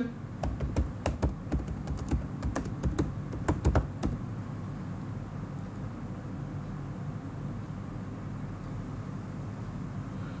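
Computer keyboard keys being tapped in a quick, irregular run of clicks for about four seconds, then stopping, leaving a low steady hum.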